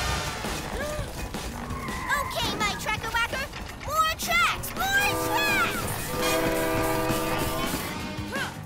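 Cartoon train sound effects under background music: a train running, with a horn sounding in two long blasts in the second half. Brief vocal sounds come earlier.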